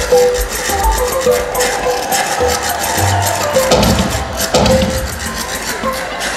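Bouncy stage-song music: a melody of short notes over bass and light, regular percussion, with two louder, fuller swells a little past the middle.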